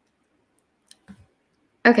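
Two faint, short clicks of a computer mouse a little after a second in, in otherwise near-quiet room tone; a woman's voice comes in just before the end.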